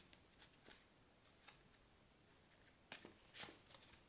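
Near silence broken by a few faint rustles and ticks of small paper score cards being leafed through by hand, the loudest about three seconds in.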